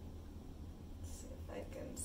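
A woman whispering briefly past the middle, over a steady low hum.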